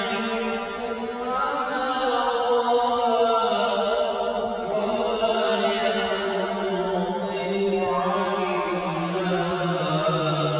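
A man's solo voice chanting a Quran recitation, holding long notes that glide slowly up and down in pitch.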